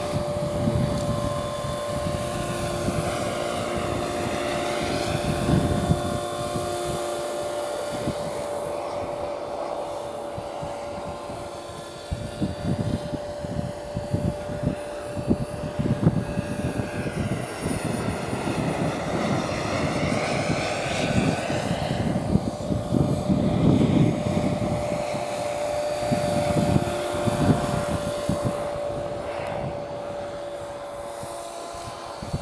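Radio-controlled 450-size AS350 Squirrel scale helicopter flying, with the steady high whine of its motor and rotor shifting in tone as it moves back and forth past the microphone. Gusts of wind buffet the microphone through the middle and later part.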